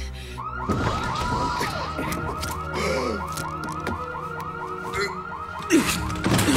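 Electronic alarm warbling rapidly, about five rise-and-fall pulses a second, cutting in about half a second in over a low rumble. A woman shouts "Jake!" near the end.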